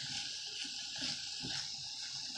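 Jackfruit, peppers and onions frying gently in olive oil, a faint steady sizzle, with a few soft scrapes of a wooden spoon stirring the pan.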